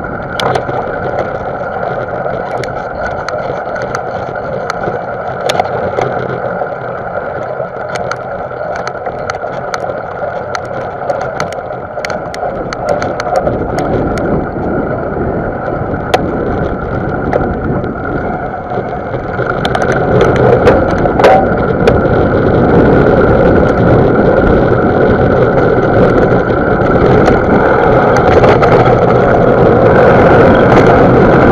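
Mountain bike riding over a dry dirt and sand track, heard from the rider's action camera: steady tyre and wind noise with frequent sharp rattles and clicks from the bike over bumps. The noise grows louder about twenty seconds in.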